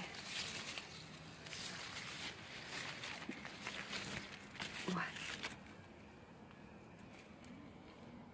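Grapevine leaves rustling as a hand pushes through the foliage, a dense scratchy noise that dies down after about five seconds.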